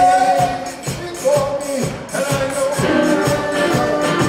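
Zydeco band playing live: drums and guitars over a rubboard scraping the beat, with sung notes held by the vocalists.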